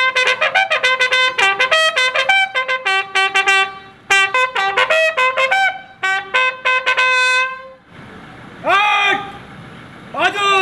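Ceremonial bugle call for a guard of honour salute: quick phrases of short, clear notes with two brief breaks, ending a couple of seconds before the end. Near the end comes a single long, drawn-out shouted drill command.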